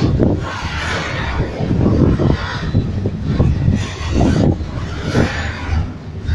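Freight train of loaded flatcars rolling past close by: a steady rumble of wheels on rails, with repeated heavy knocks about once a second as the wheelsets pass.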